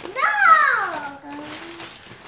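A child's voice saying one long, drawn-out "no" that falls in pitch.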